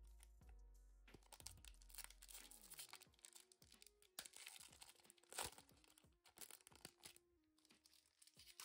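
Foil booster pack wrapper being torn open and crinkled by hand: a run of small crackles and tears, the loudest about five and a half seconds in. Soft background music plays underneath.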